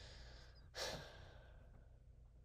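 A single faint breathy rush of air, like a sigh or exhale, about a second in, fading out over half a second, over a low steady hum.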